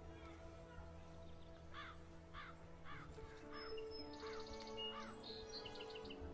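A bird calling about six times in a row, roughly two calls a second, over soft background music.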